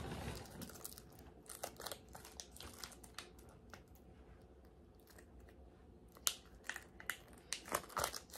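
Faint crinkling and small clicks of a toy's plastic packaging being handled and picked at while someone tries to open it, with one sharper click about six seconds in.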